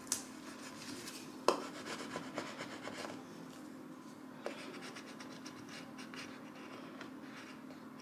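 Contact paper being rubbed down onto a wooden sign blank, first by fingers and then by a plastic scraper, to press a vinyl decal in place: faint, continuous scratchy rubbing with a few sharper clicks, one about a second and a half in and another near the middle.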